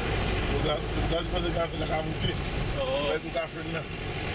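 Indistinct voices chattering inside a tour bus cabin over the steady low rumble of the moving bus.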